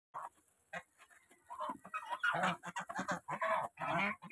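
A flock of domestic geese feeding at a tub of grain, giving short honks and calls that come thicker and louder from about a second and a half in, after a few short clicks in the first second.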